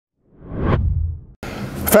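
A whoosh sound effect that swells and fades within about a second. Near the end it is followed by a sudden cut to room noise with a low hum as a man starts to speak.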